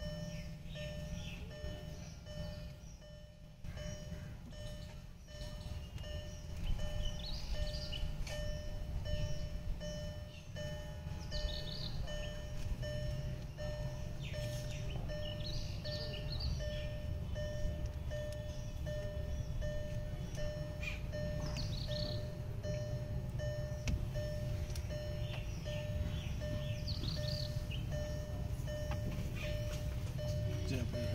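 A car's electronic warning chime sounding steadily on one high tone, with a few short high chirps now and then.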